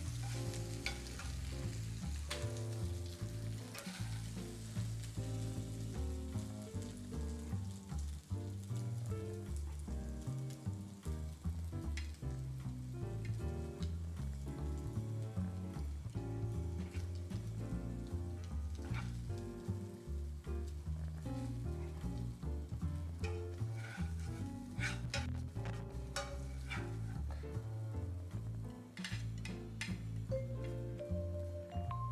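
Noodles sizzling in a hot skillet on the stove as metal tongs lift and toss them out of the pan, with several sharp clicks of the tongs against the pan near the end.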